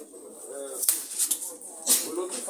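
People's voices in a small room: a short drawn-out vocal sound and a few sharp hissing sounds, without clear words.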